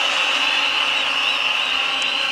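Large stadium crowd cheering steadily, an even wash of noise with no pauses.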